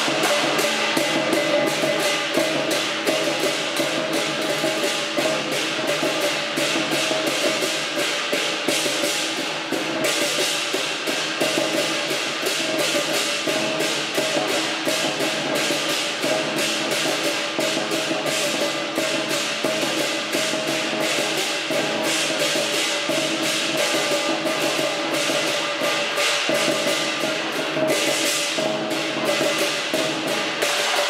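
Chinese lion dance percussion of drum, cymbals and gong, playing a fast, steady beat of continuous strikes with ringing metal.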